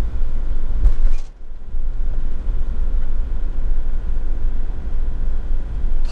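Steady low rumble of a camper van driving on a wet road, engine and tyre noise heard from inside the cab. About a second in there is a brief knock, followed by a momentary drop in the sound.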